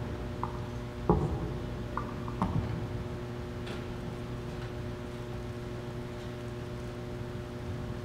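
A few soft bumps and knocks from a handheld microphone being handled, the loudest about a second in, over a steady low hum.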